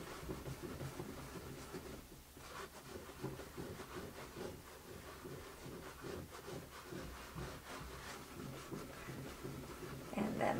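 Faint, irregular rubbing of a damp paper towel over wet image-transfer paper on a wooden plaque, scrubbing away the soaked paper layers so that the transferred image shows through.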